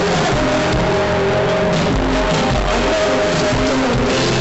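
Live chillwave band playing, recorded from the audience: loud, dense music with held notes over a steady bass.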